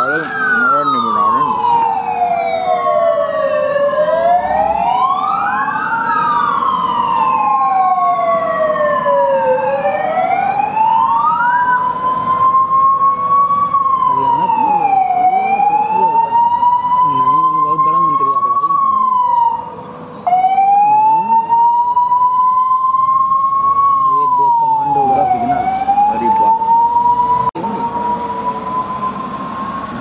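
Sirens of a passing vehicle convoy wailing loudly in slow rising and falling sweeps. At first two sirens sound out of step with each other; from about twelve seconds in a single siren carries on, rising slowly and dropping quickly about every five seconds, with a brief cut-out about two-thirds of the way through.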